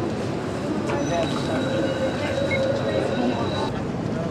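Outdoor street sound with people talking in the background and a steady high-pitched squeal that starts about a second in and stops near the end.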